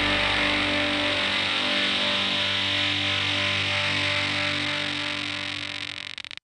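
Rock music ending on a sustained, distorted electric guitar chord that rings on and slowly fades; the lowest notes drop away about a second and a half in, and the sound breaks up near the end.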